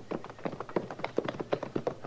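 Hoofbeats of horses being ridden, a radio sound effect: a quick, irregular run of clip-clops, several a second.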